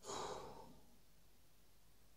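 A man's short sigh, a breath out lasting about half a second, then only faint room tone.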